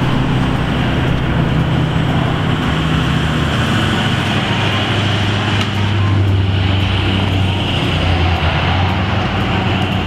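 Steady rumble of motor traffic with a low engine hum that drops lower and grows stronger about halfway through.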